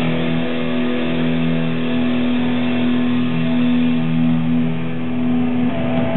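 Distorted electric guitars of a live thrash metal band holding one long, loud, sustained chord, which changes shortly before the end.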